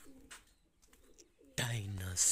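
Pigeons cooing faintly in low, soft calls, with a man's voice cutting in loudly about one and a half seconds in.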